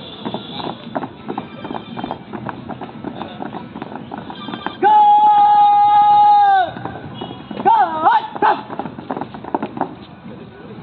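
Boots of a marching cadet squad stamping in step, then a long drawn-out shouted drill command held on one pitch for about two seconds and dropping at the end, followed by a short wavering shouted command as the squad comes to a halt.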